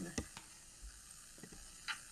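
A quiet pause in video-call audio: faint steady hiss with a few soft clicks.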